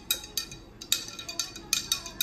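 A long spoon stirring cold-brew tea bags in a glass carafe of water, clinking against the glass about seven times at uneven spacing, each clink ringing briefly.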